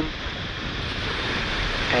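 Falcon 9 first stage's nine Merlin 1D engines firing at ignition on the pad: a dense rushing noise that grows steadily louder as the engines build to full thrust just before liftoff.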